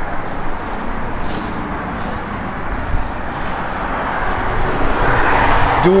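Car idling with its air conditioning running: a steady low rumble under a rushing noise that swells near the end.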